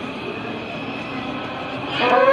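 Steady hubbub of a large crowd, with faint voices carrying through it.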